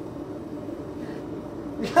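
A steady low hum runs in the background with no hammer blows. A voice comes in near the end.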